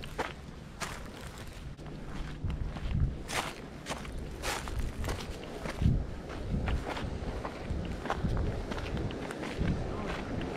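Footsteps of a person walking at a steady pace over dry dirt and gravel, with crunching steps roughly every half to one second.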